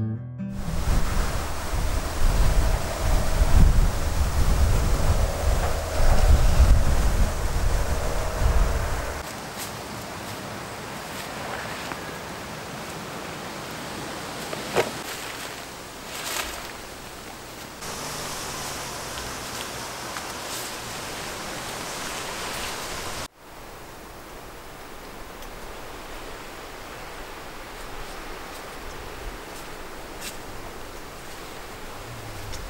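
Wind buffeting the microphone with a gusty low rumble for the first several seconds, then a steady outdoor hiss with a few faint ticks, which drops to a quieter level about two-thirds of the way through.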